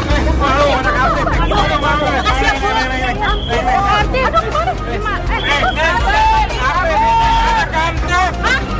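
Crowd chatter: many voices talking over one another, with no single speaker standing out.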